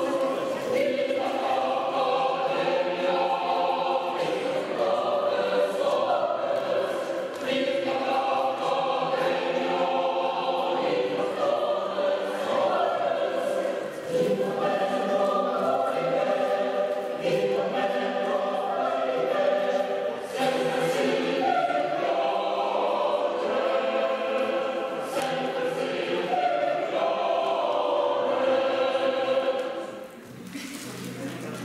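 A choir singing a steady, full-voiced choral piece that cuts off right at the end.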